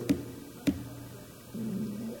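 A pause in speech over quiet room tone: a slight click at the start and a sharper click about two-thirds of a second in, then a faint low hum of a voice near the end.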